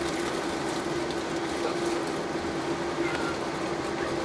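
Cabin noise inside a Boeing 747-8I taxiing on its engines: a steady rush of engine and air noise with one constant droning tone underneath.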